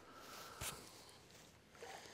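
Near silence: faint outdoor background hiss, with one soft short tick a little over half a second in.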